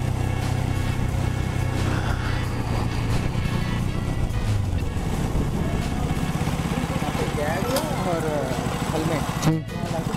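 Motorcycle engine running as the bike rolls slowly, a steady low engine note that fades about four and a half seconds in; a voice is heard briefly near the end.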